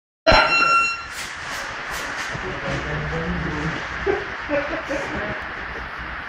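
An electronic round-timer buzzer sounds one loud, steady beep of under a second at the start, marking the start of a sparring round. After it come scattered light thuds of steps and blows on the mat, with voices in the background.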